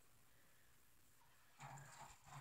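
Near silence: room tone, with a faint brief sound near the end.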